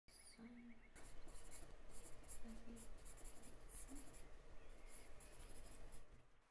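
Pencil scratching on lined paper in a run of short, irregular writing strokes that begin about a second in; faint.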